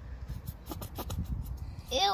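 A squeeze bottle of lotion being squeezed, sputtering out cream and air from its nozzle in an irregular run of small pops and squelches, a weird sound.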